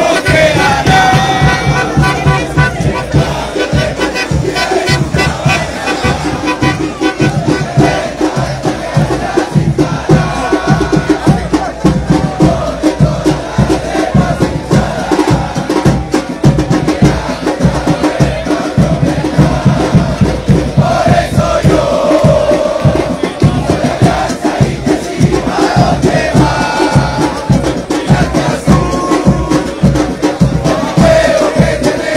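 A football supporters' group (barra) chanting in unison over fast, steady drumming, with the surrounding crowd joining in.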